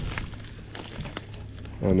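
Rustling, crinkling handling noise with a few faint clicks about a second in, as the handle of a locked car door is tried.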